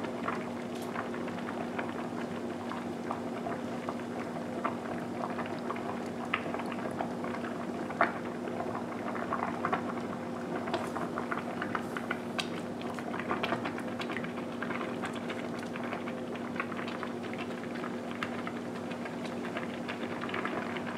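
Rice vermicelli boiling hard in a stainless steel pot of water: steady bubbling with many small scattered pops, over a steady low hum.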